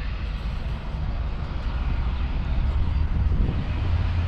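Steady low vehicle rumble outdoors, with no distinct events standing out.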